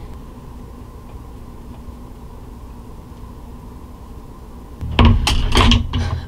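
Steady low hum of an electric space heater running in a small room. About five seconds in, louder sharp knocks and the start of a voice cut in.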